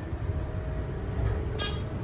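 Dover hydraulic elevator travelling up, heard from inside the cab as a steady low rumble with a faint hum. A short high-pitched sound comes about one and a half seconds in.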